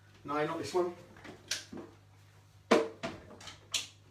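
Knocks and clunks of a hollowbody electric guitar being handled and set down on a guitar stand, several separate strikes with the loudest about two-thirds of the way through. A brief mumbled bit of voice comes near the start.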